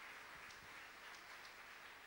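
Faint audience applause, slowly fading, with a few scattered claps standing out.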